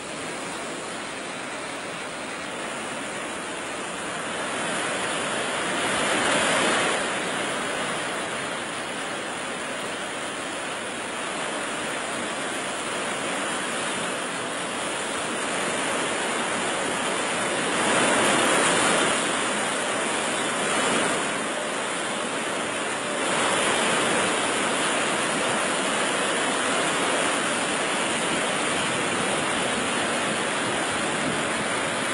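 Water pouring through the open crest gates of a large dam spillway: a steady rush of falling water and spray that swells louder a few times.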